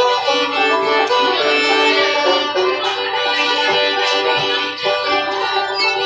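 Fiddle and banjo playing an instrumental tune together: bowed fiddle notes over quick picked banjo notes, with no singing.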